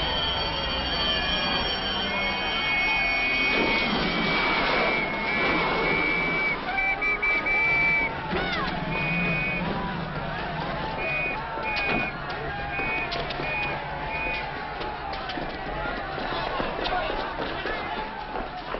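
Lively orchestral film score with crowd shouting underneath. A shrill high note is held through the first few seconds, then sounds in short repeated blasts until a few seconds before the end.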